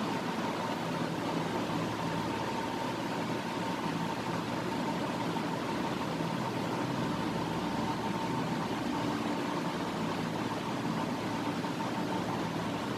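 Steady background hiss and hum with a faint constant high tone, even throughout, with no distinct knocks or clicks.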